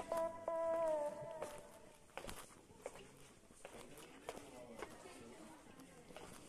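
Background music ends with a held note that slides down in pitch and fades within the first second and a half. Then faint footsteps on stone steps, with scattered light steps and distant voices.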